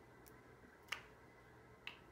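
Plastic glue-stick cap pulled off with a sharp click just before halfway, then the cap tapped down on the table near the end, in otherwise near silence.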